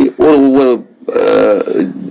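A man speaking, in two stretches with a short pause about a second in.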